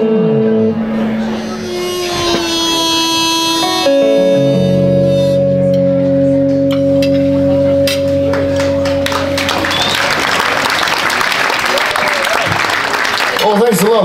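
End of a solo blues song on electric guitar and harmonica: a held harmonica note, then a final guitar chord left ringing for several seconds, followed by audience applause from about ten seconds in.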